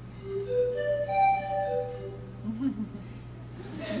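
A quick run of about six clear notes on a small wooden flute, stepping up and then back down over about two seconds. A short low vocal sound follows, and a voice starts near the end.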